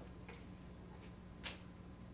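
Faint, sparse clicks over a low steady hum. One click comes about a third of a second in, and a clearer one about a second and a half in.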